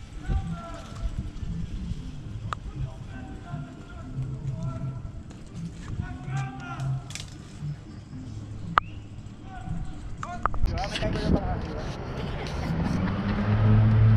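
Indistinct voices talking at a distance over a low outdoor rumble, with a few sharp clicks. Near the end the voices come nearer and louder, and a steady low hum sets in.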